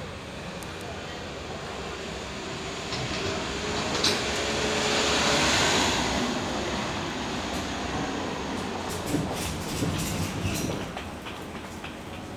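A passing vehicle: a rushing noise that swells to a peak about five seconds in and then fades, with a few sharp clicks near the end.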